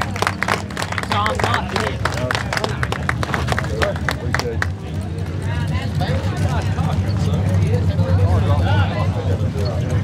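A small crowd clapping for about the first five seconds, then scattered chatter from several voices, over a steady low hum.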